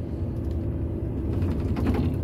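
Lorry engine and road rumble heard from inside the cab while driving slowly, low and steady, growing a little louder toward the end.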